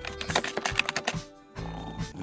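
A fast run of computer keyboard typing clicks, used as a sound effect, over background music. The clicks stop after about a second and the music carries on.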